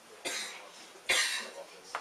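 A person coughing twice in a room, the second cough louder, followed by a brief click just before the end.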